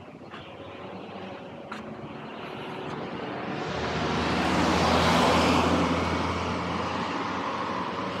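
A car passing along the road alongside, building up to its loudest about five seconds in and then fading away.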